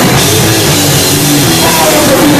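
Hardcore punk band playing live and loud: distorted electric guitar, bass and a pounding drum kit in a fast, steady wall of sound.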